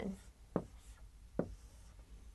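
Marker writing on a whiteboard: faint strokes with two light taps of the tip against the board, a little under a second apart.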